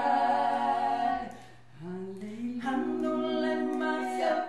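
Three women singing a cappella in close harmony, holding a chord, dropping away briefly about a second in, then coming back in with a rising note and holding the new chord.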